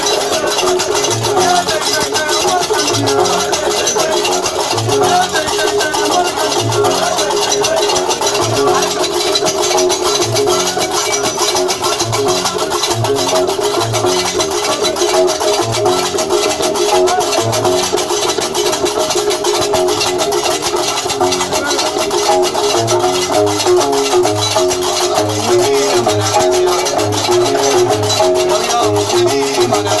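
Diwan (Gnawa) music: iron karkabou castanets clattering in a fast, steady rhythm over deep repeating bass notes, typical of a guembri bass lute. The bass notes come about once a second and quicken about two-thirds of the way through.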